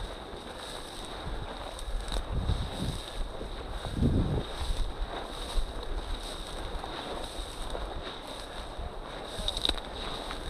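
Wind rumbling on the microphone, with the swish of dry weed stalks brushing against a walker's legs, louder in a few passes.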